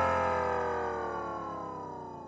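Electronic club music fading out: a held synthesizer chord slides slowly down in pitch and grows steadily quieter, with the beat gone.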